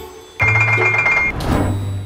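Edited sound effects with music: a deep thump about half a second in under a bright, quickly pulsing chime that lasts about a second, then a second thump.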